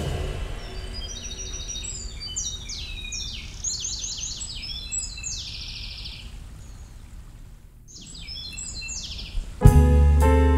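Birdsong: many quick high chirps and short trills over a low rumble, with a short gap about eight seconds in. The band comes back in loudly just before the end.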